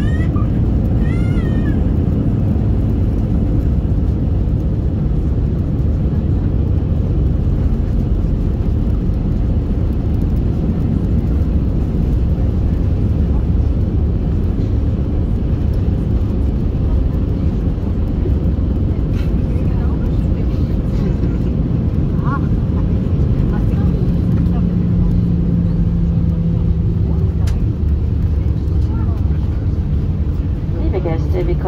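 Steady, loud cabin noise of an Airbus A320 rolling along the runway after touchdown: engine hum and the rumble of the wheels and airframe on the concrete. A voice is heard briefly at the start.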